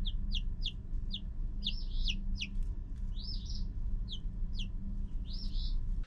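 A brood of eight-day-old Icelandic chicks peeping: a steady run of short, high peeps, mostly falling in pitch, two or three a second, over a low steady hum.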